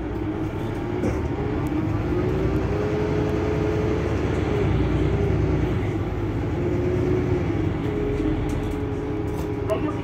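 Mercedes-Benz Citaro C2 hybrid city bus idling while stopped: a steady low engine rumble with a wavering whine above it.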